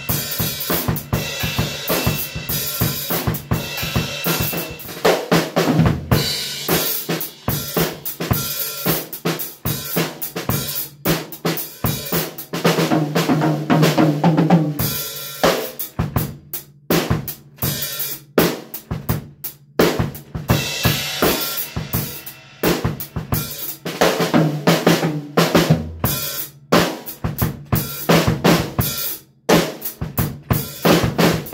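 Acoustic drum kit played freely: snare, bass drum, toms and cymbals in dense, uneven strokes, with stretches of cymbal wash over the hits.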